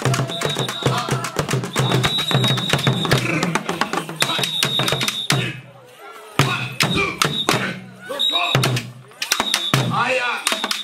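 Acholi traditional drums beaten in a fast, dense rhythm, with voices calling over them. The drumming thins out briefly twice, near the middle and again later. A shrill steady note comes and goes above the drums several times.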